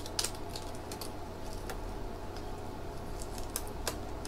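Faint, irregular small clicks and rustles of hands handling a nebulizer compressor's plastic hose and a latex condom while fitting the condom onto the hose.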